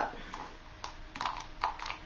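Light, irregular clicks and taps of a utensil against a container as silicone is mixed, about seven in two seconds.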